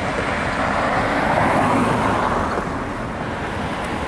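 A car passing on the street: tyre and engine noise that swells after about a second and then fades.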